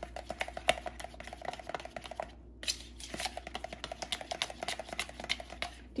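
A metal fork beating thick Greek yogurt and sugar in a plastic tub, clicking and scraping rapidly against the tub's sides, with a brief pause a little over two seconds in. The sugar is being worked in until it dissolves and the yogurt turns smooth.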